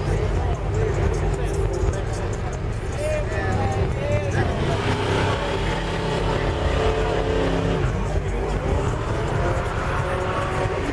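A car engine held at steady revs from about five to eight seconds in, over crowd chatter and a continuous deep bass.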